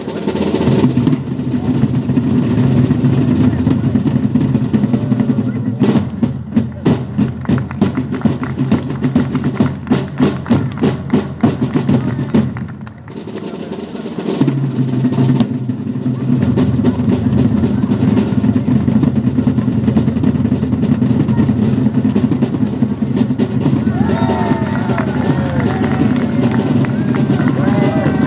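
Drums playing a sustained roll under the flag display, with a run of sharp, evenly spaced beats for several seconds near the middle and a brief dip just after. Voices come in over the drumming near the end.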